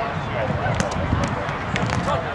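Spikeball (roundnet) rally on sand: a few sharp hits of hands striking the small rubber ball and the ball popping off the net, over wind rumble on the microphone and background voices.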